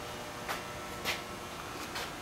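Quiet room tone with three faint short ticks spread across the two seconds.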